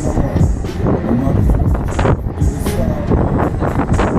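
Huss Break Dance fairground ride spinning at speed, heard from a rider's seat: loud ride music over low, gusting rumble of wind on the microphone.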